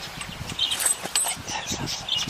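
Goats moving and nibbling right by the microphone: a busy run of short clicks, knocks and rustles.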